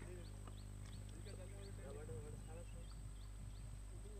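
Faint, distant people's voices talking, with short high chirps here and there, over a steady low hum.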